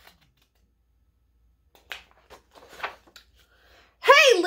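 Paper picture-book pages being turned: after a near-silent first half, a few short paper flicks and rustles starting about two seconds in.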